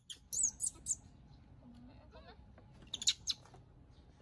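Baby monkey giving short, very high-pitched squeaks in two bursts, the first about half a second in and the second around three seconds, with a wavering cry between them.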